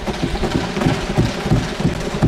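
Many seated members thumping their desks together in approval: a dense, continuous clatter of thuds with a hiss of noise over it.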